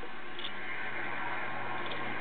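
Steady background hiss with a faint low hum (room tone); nothing else stands out.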